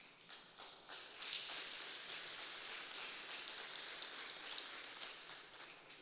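Congregation applauding: a patter of many hands clapping that builds up over the first second or so, holds, and dies down near the end.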